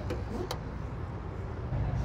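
Steady low rumble of background traffic, with one sharp click about half a second in.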